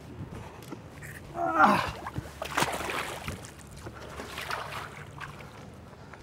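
Water splashing and sloshing at the side of the boat as a released muskie is let go and kicks away, the splash strongest about two and a half to three and a half seconds in.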